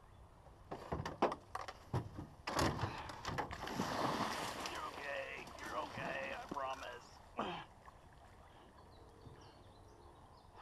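A large hooked alligator gar thrashing at the surface beside an aluminum jon boat: heavy, irregular splashing and churning water starting about a second in, dying away after about seven and a half seconds.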